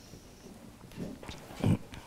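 A quiet pause in a room, with a few faint brief noises and one short spoken word near the end.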